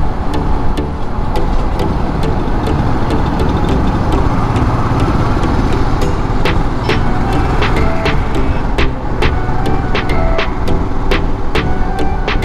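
Riding noise from a Royal Enfield Himalayan BS6, its single-cylinder engine and the wind making a steady, loud rumble. Background music plays over it, and a sharp, regular beat comes in about halfway through.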